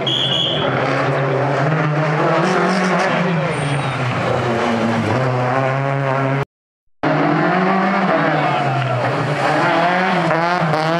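Rally car engines revving hard as they pass, the pitch climbing and falling with the gear changes. The sound cuts out for about half a second some six and a half seconds in. Then a second rally car's engine comes in, its revs climbing near the end.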